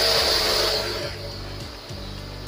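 Jet-pump spray gun blasting water onto a split AC's mesh air filter and the floor: a loud spray that cuts off about a second in, leaving the pump's low steady hum.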